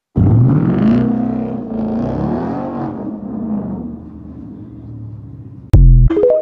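Ford Mustang engine and exhaust bursting into sound loud, its pitch rising and falling over the first few seconds, then settling and fading to a lower, quieter note. Near the end, a sudden loud boom.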